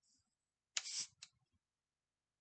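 Plastic screw cap on a soda bottle being twisted against its stiff seal: a short burst of crackling plastic about a second in, followed by a few small clicks.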